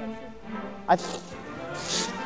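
Background music with a man's single brief word about a second in. Near the end comes a short scraping hiss as a snow shovel digs into the snow.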